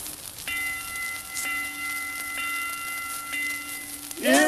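Music of sustained bell-like chime tones: four struck about a second apart, each ringing on steadily under the next.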